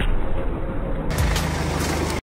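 Car rolling slowly over asphalt: tyre noise on the road surface with a low engine rumble, which swells about a second in.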